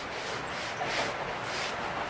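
A stiff-bristled shoe-cleaning brush scrubbing a sneaker in several quick back-and-forth strokes, each a short bristly swish.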